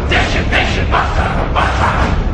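A voice repeating short, harsh syllables, about two or three a second and alternating higher and lower, over a steady low rumble.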